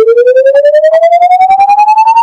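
Synthetic electronic tone rising steadily in pitch and climbing more slowly as it goes, pulsing rapidly in loudness. It is a sound clip meant to provoke a dog's reaction.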